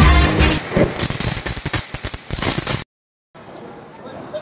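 Background music with a heavy beat stops about half a second in. A ground fountain firework then sprays with a dense, uneven crackle for about two seconds. The sound then drops out to silence for a moment and comes back quieter.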